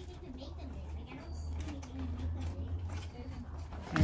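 Faint, distant voices of people talking in the background over a low steady hum.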